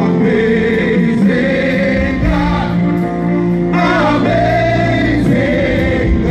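Live gospel music: a group of singers with a choir-like backing sing over electronic keyboard accompaniment, the voices wavering with vibrato on held notes.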